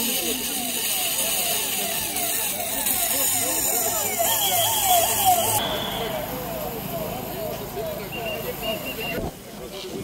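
Vehicle siren sounding in a rapid yelp, its pitch sweeping up and dropping back a few times a second, fading away about nine seconds in.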